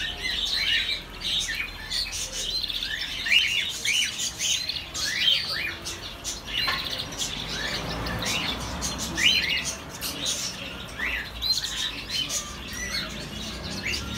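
Caged birds chirping over and over, a steady run of short calls that sweep quickly in pitch, several a second.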